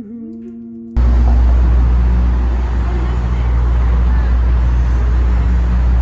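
A short laugh, then from about a second in, loud steady street traffic noise with a heavy low rumble.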